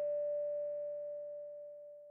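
A single held musical note: a nearly pure, steady tone that slowly fades away.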